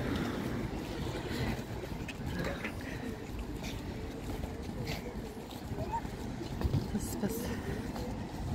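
Indistinct chatter of passers-by, with a steady low rumble of wind buffeting the microphone.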